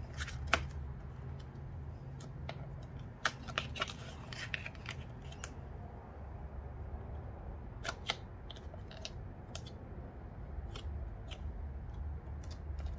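Hands pressing, folding and smoothing an embossed cardboard envelope: rustling and rubbing of card and paper, with scattered sharp ticks and taps about half a second in, around three to four seconds in and again near eight seconds. A low steady hum lies underneath.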